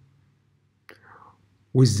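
A pause in a man's narration: a small mouth click and a short breathy inhale about a second in, then his speech resumes near the end.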